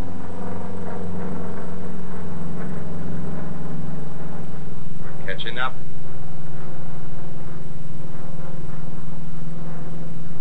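Steady drone of the Grumman F8F Bearcat's radial engine and propeller as the fighter flies past overhead, its pitch drifting slightly. A brief high wavering sound cuts in about five and a half seconds in.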